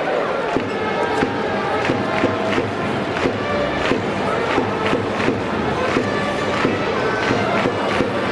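Music with a steady beat and held brassy notes, over a murmuring stadium crowd.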